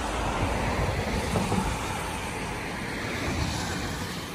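A car passing on the adjacent road bridge, its tyre and engine noise on the wet road surface heard as a steady rush that slowly fades.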